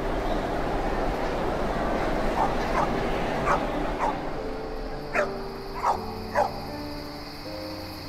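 A dog barks about seven times, the last three barks the loudest, over a steady background of ambient noise. Soft sustained music notes come in about halfway through.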